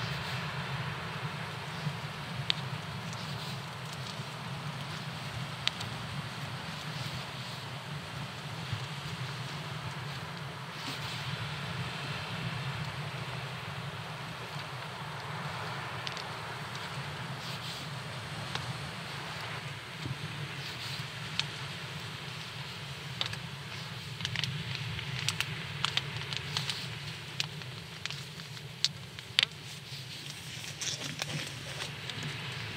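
Steady outdoor background noise with scattered small clicks and rustles from hands wrapping a shock leader around braided line in an FG knot. The clicks come more often near the end.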